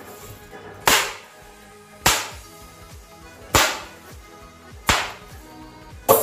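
Snap pops (bang snaps) going off in a batch each time a fist punches down into a steel bowl full of them: four sharp cracks, roughly one every second and a quarter, each dying away quickly.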